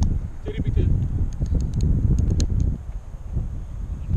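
Wind rumbling and buffeting against the microphone of a moving outdoor camera, with faint voices underneath.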